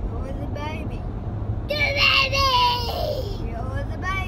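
A young child's high-pitched voice, faint at first and then louder with sliding, falling pitch from about two seconds in, over the steady low rumble of a car on the road.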